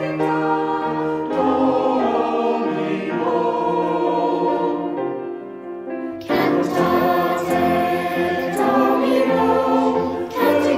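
A choir singing a sustained sacred piece; the phrase dies away about five seconds in and the voices come back in together about a second later.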